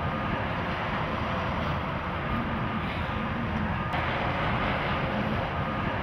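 Steady drone of a running truck engine, the bucket truck's engine kept running under the raised aerial bucket.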